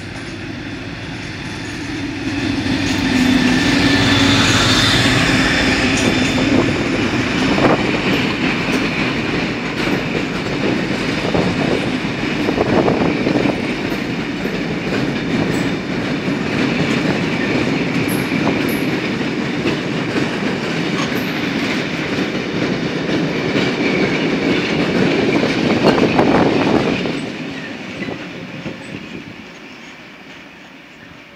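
Class 56 diesel locomotive, with its Ruston-Paxman V16 engine, passing under power, loudest about four seconds in. A long rake of tank wagons follows, rumbling and clacking over the rail joints, and fades away a few seconds before the end.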